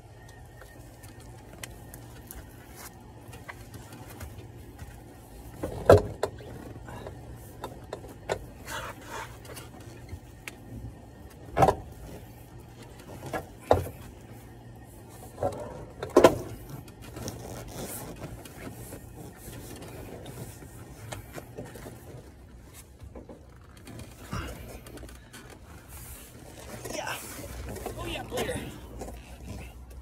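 Handling noise from removing a car's rear bench seat: scattered sharp knocks and clicks several seconds apart, with rustling between, as pliers work the seat's bent metal hooks and the seat is pulled loose.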